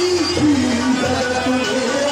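Live aarti music from a nautanki stage ensemble: a held melody line moving in steps from note to note over a steady low accompaniment.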